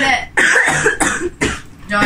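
A person coughing, three short coughs in a little over a second.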